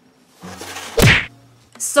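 A swelling whoosh that builds into a single loud whack with a deep thump about a second in, then dies away quickly.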